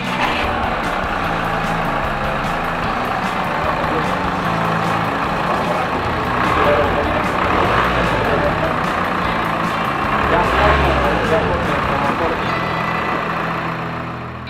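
Mercedes A180d's 1.5-litre four-cylinder diesel engine running steadily. This is its first run after a fuel filter change and bleeding of the fuel lines.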